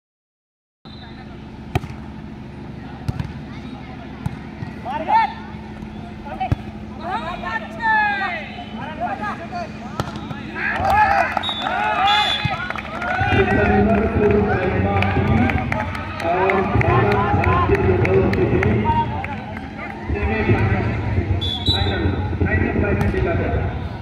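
Outdoor volleyball game: sharp slaps of hands striking the ball every few seconds, with players' shouts and calls. From about halfway through, voices become louder and nearly continuous, over a steady low hum in the first half.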